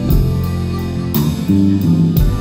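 Live band playing a song's opening: a harmonica melody in held notes over guitar, with a steady beat.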